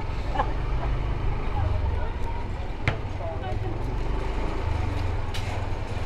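Motorcycle engine running at low speed with a steady low drone, and people's voices in the background. A single sharp click comes about three seconds in.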